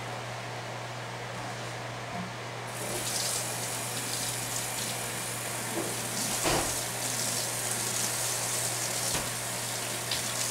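Kitchen faucet turned on a little under three seconds in, water running steadily into the sink and over something held under it, above a steady low hum. A knock sounds a little past halfway.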